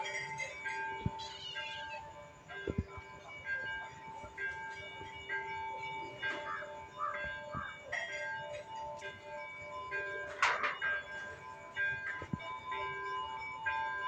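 Faint background music of held notes starting and stopping like a slow melody, with a few short wavering calls over it, near the start, in the middle and about three-quarters of the way in.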